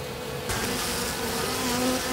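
Honeybees buzzing around spilled honey they are feeding on, a steady hum with a buzzing tone that grows louder near the end.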